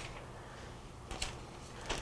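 Quiet room with a few faint clicks from mylar film and a cutting tool being handled, two of them close together about a second in.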